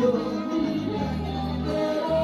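A man singing into a handheld microphone over a recorded instrumental backing track, both amplified through PA speakers.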